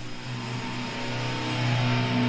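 Distorted electric guitar holding a low droning note through a loud amplifier, swelling steadily louder as the next song begins.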